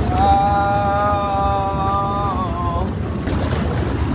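Jacuzzi jets churning the water with a steady low rumble. Over it, a man lets out one long held "uhh" of nearly three seconds, a reaction to the hot water, its pitch dipping slightly near its end.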